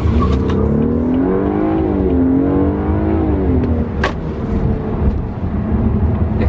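BMW 328i's 2.0-litre turbocharged four-cylinder pulling away under hard acceleration, heard from inside the cabin. The engine note climbs in pitch and drops back at each upshift of the eight-speed automatic, about twice in the first few seconds. A sharp click sounds about four seconds in.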